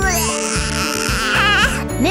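Children's background music with a bright shimmering sound effect over it, and a short wavering high-pitched cry-like sound near the end.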